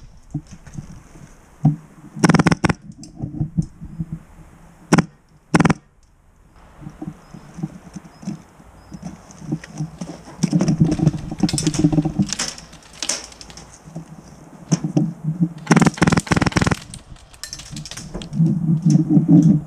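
Airsoft gunfire and gear clatter: sharp clicks in scattered groups, with a dense run of clicks lasting about a second near the end.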